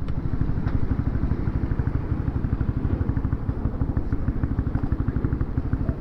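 Honda CB150R's single-cylinder engine running at low revs with a steady, even beat.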